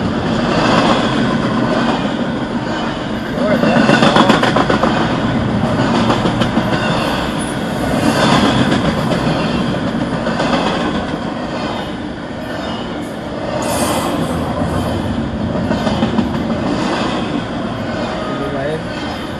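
Double-stack intermodal freight train rolling past, its wheels running on the rails in a continuous rumble that rises and falls every few seconds as the cars go by.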